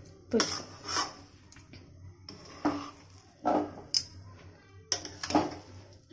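A spoon scraping and stirring through a damp mixture of fried semolina, ground dry fruit and sugar in a metal kadai. It goes in about eight separate strokes, each scraping against the pan.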